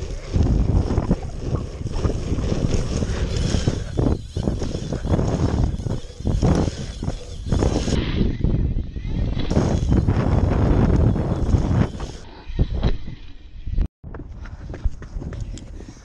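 Wind buffeting the microphone of a bike-mounted action camera and tyres rolling on the asphalt of a pump track, a loud rumble that surges and eases as the bike pumps through the rollers and berms. The sound cuts out briefly near the end and comes back quieter.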